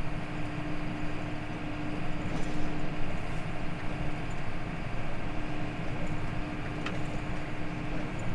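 John Deere 6155R tractor running steadily, driving a PTO-powered winged topper as it cuts rushes, heard from inside the cab: an even drone with a constant hum.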